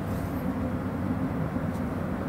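Steady low rumble of background noise.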